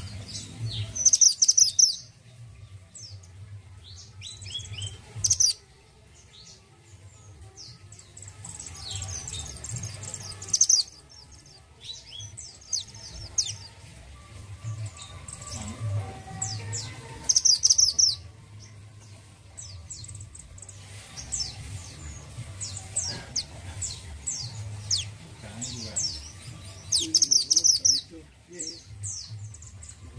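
Caged male mantenan gunung (minivet) singing: repeated bursts of fast, high chirps and short downward-sweeping whistles. The loudest, densest phrases come every few seconds, about one, five, eleven, seventeen and twenty-seven seconds in.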